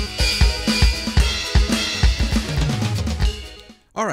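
Vangoa VED-B10 electronic drum kit played with sticks along with the module's built-in practice song 2: steady kick, snare and cymbal sounds over a backing track, all dying away just before the end.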